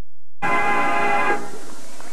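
A marching band holds a sustained chord, its upper notes cutting off about a second and a half in. It follows a split-second gap of total silence at the start, where the recording is edited.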